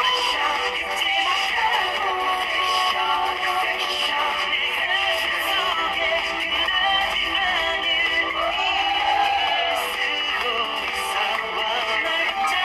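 Pop music with singing played through the vivo Y12s smartphone's built-in loudspeaker, continuous and thin in the bass.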